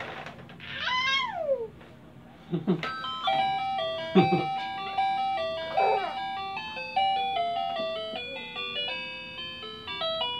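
Baby walker's electronic toy tray playing a simple beeping melody, starting about three seconds in. Before it a baby gives a high squeal that falls in pitch, and short baby vocal sounds come over the tune.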